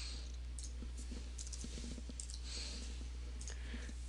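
A few faint computer mouse clicks over a steady low electrical hum and hiss.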